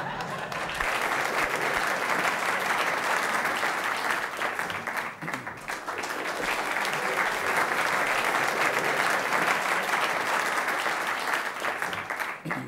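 Audience applause in a theatre: dense, steady clapping that builds over the first second, holds, and tapers off at the very end.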